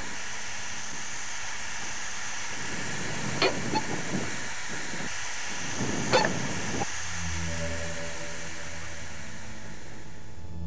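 A truck driving over a stony dirt track under a steady hiss, with a few sharp knocks, two of them close together a little past three seconds in and another about six seconds in. About seven seconds in, low sustained music notes begin.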